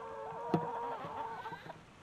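Hens calling, with a long, steady, drawn-out call that fades about a second in, followed by softer clucks. A short tap sounds about halfway through.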